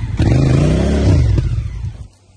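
Honda Africa Twin's parallel-twin engine revved hard for a burnout, the rear tyre spinning in the dirt as the rider tries to pivot the bike in place; the revs rise, hold for about a second, then fall back to idle near the end.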